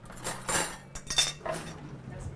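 Cutlery clinking and scraping against plates and dishes, in about three short clatters.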